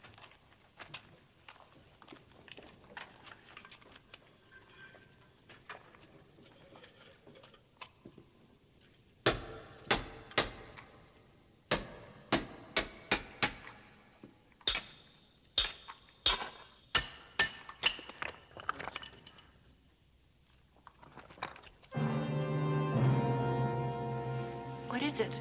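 Hammer blows on a chisel: soft tapping and scraping, then over a dozen sharp, ringing strikes in quick runs. Music swells in near the end.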